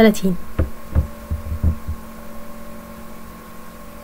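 Steady electrical hum with a few dull, low thumps in the first two seconds.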